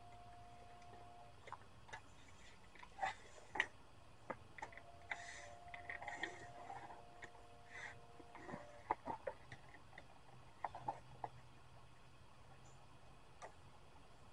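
Faint, scattered clicks and light knocks as a tape measure and a length of wood door trim are handled and marked on a miter saw table, with the saw not running.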